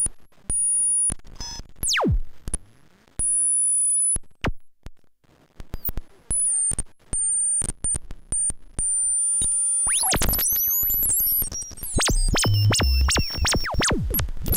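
Ciat-Lonbarde Cocoquantus 2 looping synthesizer making glitchy electronic sounds: short high whistling tones broken by clicks, with a fast falling pitch sweep about two seconds in. From about ten seconds on it turns into a dense, chaotic tangle of gliding tones with low thumps.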